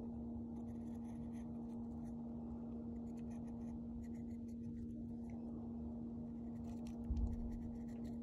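Pen tip scratching in short, light strokes on tracing paper, over a steady low electrical hum. A dull low thump comes about seven seconds in.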